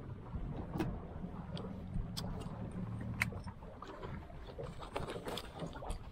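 Low steady rumble of a bass boat sitting on open water, easing after about three seconds, with several sharp clicks as a life vest's plastic buckles are handled and undone.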